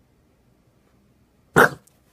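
Near silence, then one short, loud bark from a bulldog about a second and a half in.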